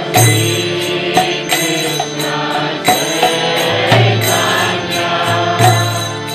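Harmonium playing sustained chords under a chanted devotional mantra, with small hand cymbals (karatalas) striking in time.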